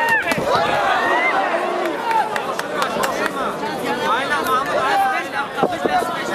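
Arena crowd at a cage fight, many spectators shouting and yelling over one another, with a few sharp impacts cutting through.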